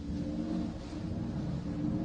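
A low, steady ambient drone: several held low tones over a rumble.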